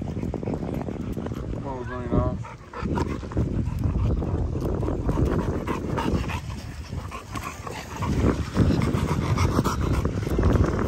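A large XL bully dog panting heavily close to the microphone, with the rough breaths growing louder near the end.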